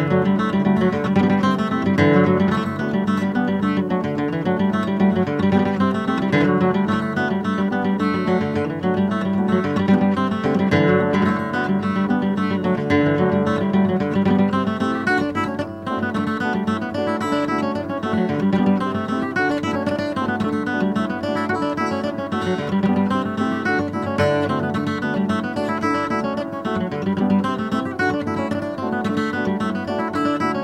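Solo acoustic guitar playing a traditional Irish dance tune, with a quick run of picked notes.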